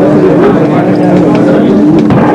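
Electric guitar played loud through Marshall amplifiers, with one steady tone held under it, the sound distorted by an overloaded camcorder microphone.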